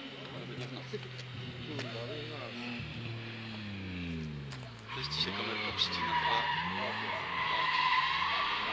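A car driven hard in a drift: its engine revs fall and rise several times, then from about five seconds in the tyres squeal in a long skid that grows louder toward the end.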